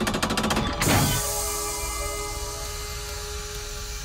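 Cartoon sound effects: a rapid run of mechanical clicks, like a large vault door's locking mechanism turning, for just under a second, then a loud burst about a second in, followed by a held music chord.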